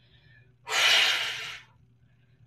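One forceful breath out through the mouth during a reverse crunch, a hissy rush of air lasting about a second, starting a little after the half-second mark.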